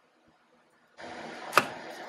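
Near silence, then a steady hiss comes in halfway. A single sharp metallic click follows as a pick tool pops a small retaining clip free on a truck's front steering knuckle.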